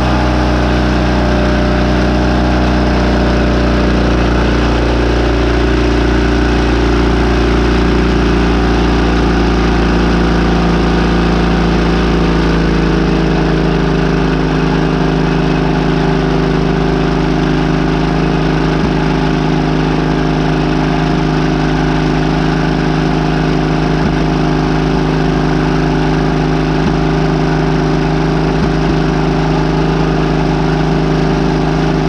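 The gasoline pony engine of a 1942 Caterpillar D2, a small two-cylinder starting engine, running steadily as part of starting the dozer's diesel. Its note shifts a few seconds in and again about 13 seconds in, then holds even.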